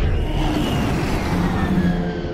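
Two fighter jets passing close with a loud jet roar that starts abruptly, a whine in it falling slowly in pitch as they bank away.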